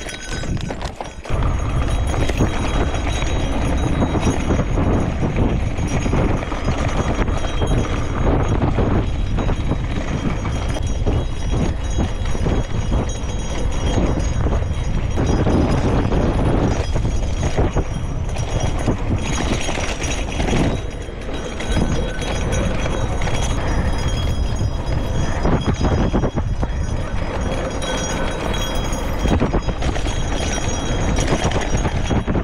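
Gravel bike riding fast over a dirt trail: tyre noise and the bike rattling over the bumps, with wind rushing over the camera microphone.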